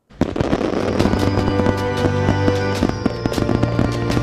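Music with the bangs and crackle of fireworks laid over it, starting suddenly a moment in.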